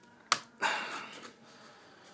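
A folding pocket knife turned around in the hand, with one sharp click about a third of a second in, followed by a brief hiss that fades away.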